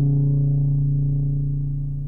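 EMS Synthi AKS analogue synthesizer sounding one low, steady note at a fixed pitch. It slowly dies away, growing duller and quieter as its upper harmonics fade.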